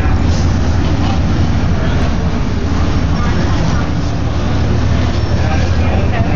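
A fire engine's diesel engine running steadily, a constant low drone, with voices faint over it.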